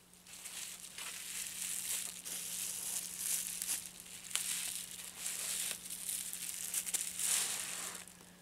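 Plastic packaging and bubble wrap crinkling and rustling close to the microphone as they are handled and unwrapped, in uneven waves with a louder stretch near the end.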